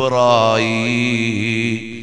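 A man's voice chanting one long, drawn-out melodic phrase in the intoned style of a Malayalam Islamic sermon. The note is held with a slight waver and fades out near the end.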